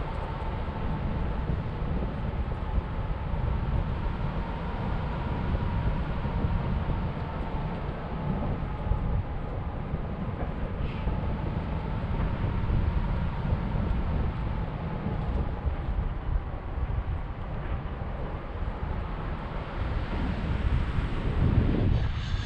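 Airflow buffeting an action camera's microphone during a tandem paraglider flight: a steady, low rushing noise, with a faint thin whistle that wavers slowly in pitch.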